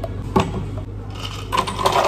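A single sharp tap of a metal spoon on a plastic cup, then a clattering rattle of ice cubes tumbling into a plastic blender jug, over a low steady hum.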